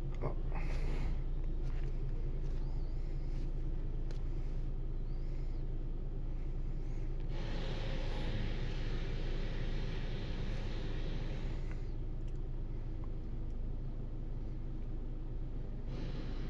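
A 2016 Hyundai Elantra's 2.0 GDI four-cylinder engine idling steadily, heard from inside the cabin as a low, even hum. A hiss joins it from about seven seconds in and stops about five seconds later.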